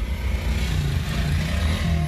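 Steady low rumble of a car heard from inside the cabin, with no break or change.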